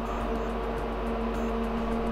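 Lenovo System x3650 M4 rack server's cooling fans running steadily during boot, a constant whir with a low hum and a couple of steady tones in it. The fans are running at their louder boot-up speed.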